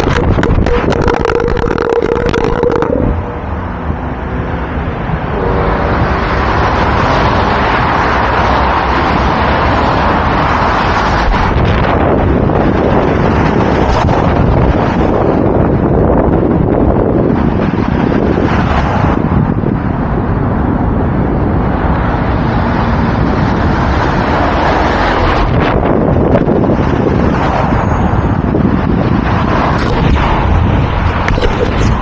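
A dropped action camera skidding and clattering along asphalt for the first few seconds, then lying on the road with loud wind on its microphone and road traffic passing, the noise swelling and easing several times.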